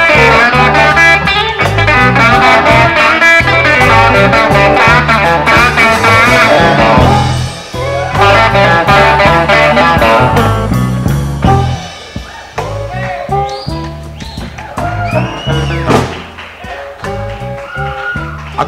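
Slow blues guitar playing an instrumental passage between sung lines. It is full and loud at first, then thins out to quieter, sparser notes with some bent pitches after about twelve seconds.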